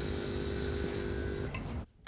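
Electric door-release buzzer of an entry-phone buzzing steadily as it unlocks a communal front door, stopping about one and a half seconds in.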